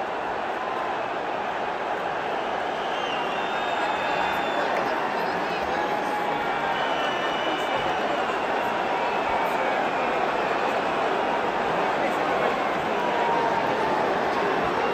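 Football stadium crowd just after a late equalising goal: a dense, steady wash of many voices and cheering, growing a little louder a few seconds in.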